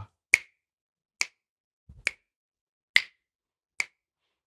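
Finger snaps keeping a steady beat: five crisp snaps a little under a second apart, marking the pulse of a rhythm exercise in 3/4 time.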